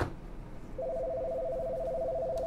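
Telephone ringback tone: the steady two-note ring heard while a call to the next caller is ringing, starting just under a second in and lasting about a second and a half. A sharp click comes at the very start.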